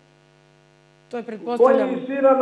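Faint, steady electrical mains hum with a buzzy stack of evenly spaced overtones, heard alone in a pause; a woman starts speaking about a second in.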